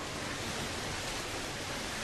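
Steady, even background hiss: room tone with no distinct event.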